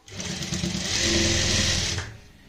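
Industrial lockstitch sewing machine running a burst of stitching: the motor whirs up to speed and the needle hammers rapidly through folded cotton over elastic, holding steady before slowing at the end.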